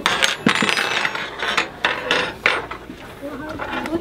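Several metal tuning forks being set down on a tabletop: a run of quick, overlapping clinks and clatters that thins out about two and a half seconds in.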